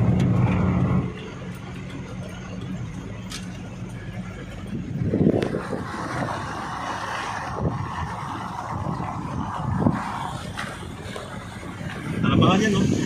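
Motor vehicle engine and road noise heard from inside a moving vehicle on a wet road. A steady engine hum drops away about a second in, leaving quieter, even road and wind noise with a few soft thumps.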